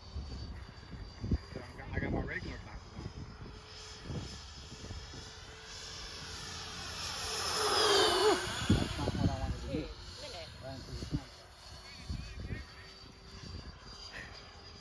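Freewing Me 262 twin electric-ducted-fan RC jet making a pass: the whine of its two fans grows louder to a peak about eight seconds in, then drops in pitch as it goes by.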